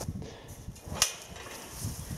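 A single sharp click about a second in, over faint low rustling and handling noise.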